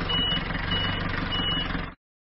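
Bulldozer sound effect: a heavy diesel engine running steadily with a reversing alarm beeping about every 0.6 s, three beeps here. The sound cuts off just before the end.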